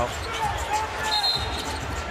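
Basketball being dribbled on a hardwood court, its bounces heard under arena crowd noise.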